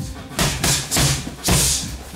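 Boxing gloves smacking Thai pads in a jab, cross, hook, then a round kick slapping into the pads: four sharp hits in about a second and a half, the kick the loudest. Background music plays underneath.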